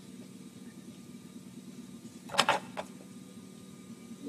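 A low steady electrical hum from live music equipment in a gap between songs, with a short cluster of sharp knocks and clicks from handling about two and a half seconds in.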